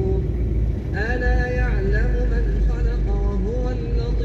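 A man's voice chanting Quran recitation in Arabic, in long melodic held notes, a new phrase beginning about a second in. Under it runs the steady low rumble of a car in slow traffic.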